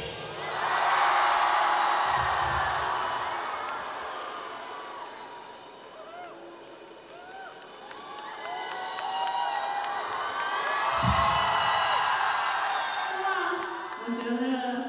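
Large arena crowd cheering and screaming, with shrill individual whoops over the noise. It swells loudly at the start, dies down through the middle and rises again near the end.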